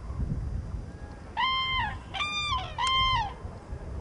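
Common cranes calling: three loud trumpeting calls in quick succession, starting about a second and a half in, each a clear level note that dips at its end.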